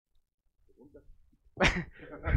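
Faint murmuring, then about a second and a half in a single sudden, loud vocal burst from a person, sharp at the start and about a quarter second long, running straight into room chatter.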